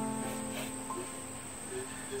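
Slow background music with long held notes that thin out in the middle, over a steady high-pitched drone of insects.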